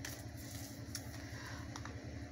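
A low steady hum with a few faint clicks about a second in and near the end.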